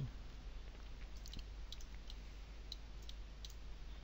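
A few faint, scattered computer mouse clicks over a steady low electrical hum as the 3D view is turned on screen.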